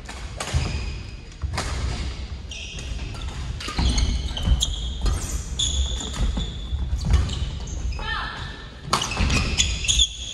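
Badminton doubles rally on a wooden court: sharp racket hits on the shuttlecock, with sneakers squeaking and feet thudding as the players move.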